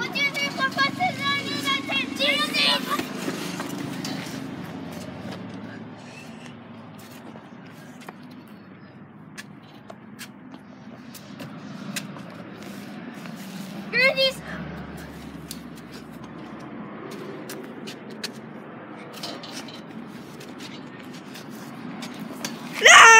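A child's voice outdoors: drawn-out voiced sounds in the first few seconds, then low background noise with scattered light clicks, and a single short shout about fourteen seconds in.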